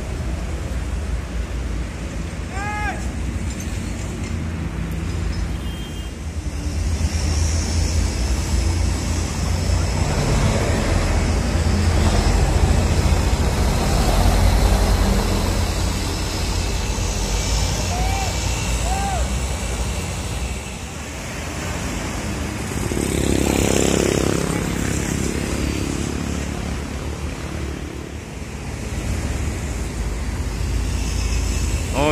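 Diesel engine of a Mercedes-Benz OC 500 RF 2542 coach running as the bus pulls away, a steady deep rumble that swells for a few seconds, among other idling coaches. A short, louder rush of noise comes about two-thirds of the way through.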